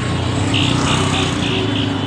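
Street traffic: a steady low engine hum from nearby motor vehicles, with a quick run of short high-pitched sounds about three a second in the middle.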